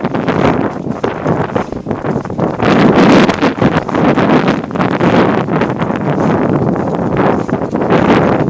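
Wind buffeting the camera's microphone: a loud, uneven noise that swells and fades without any clear pitch.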